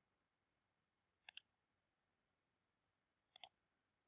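Near silence with two computer mouse clicks, about two seconds apart, each a quick double tick.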